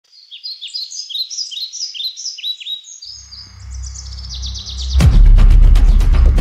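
Birds chirping in quick, repeated downward-sweeping calls. About three seconds in, a low drone swells up beneath them, and at about five seconds loud background music with a steady beat comes in.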